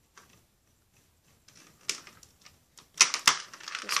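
Hard plastic Lego Technic Power Functions parts being handled: a string of small clicks and taps that grows busier after about a second and a half, with a few sharp, louder clicks about three seconds in.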